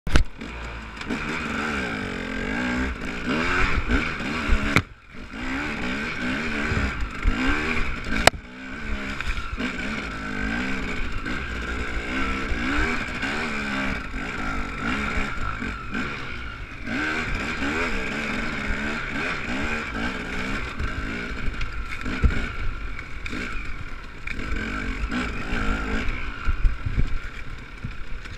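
Dirt bike engine revving up and down through rough off-road riding, with knocks and clatter from the bike. The engine sound drops away briefly about five seconds in, and there is a sharp knock a few seconds later.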